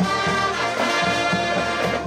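High school marching band playing: the brass hold full sustained chords over a regular low drum beat.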